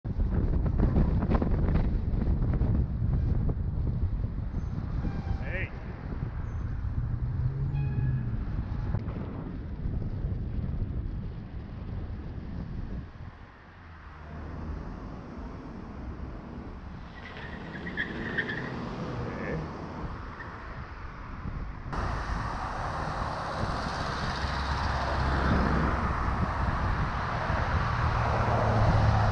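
Wind rushing over the microphone at riding speed, with road traffic driving past. The noise drops away briefly about halfway through, then swells and grows louder toward the end.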